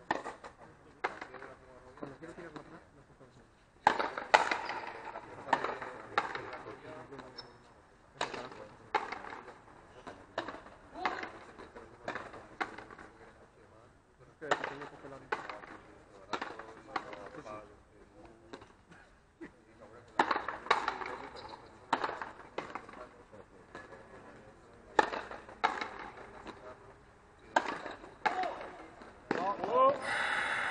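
Frontenis rally: the ball cracking off the rackets and smacking against the frontón wall and floor in quick sharp hits, with a short ringing echo after each. The hits come in several bursts of exchanges with short pauses between them.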